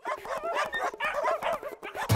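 Several dogs yipping and barking excitedly, many short high calls overlapping one another, starting abruptly.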